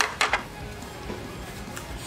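Background music with two quick clinks of cutlery on a plate near the start.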